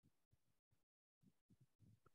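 Near silence: only very faint low sounds that cut in and out.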